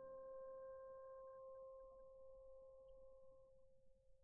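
The last held note of a classical orchestral recording dying away: one faint steady pitch with its octave above, the upper tone fading out about three and a half seconds in and the lower one just after, leaving near silence.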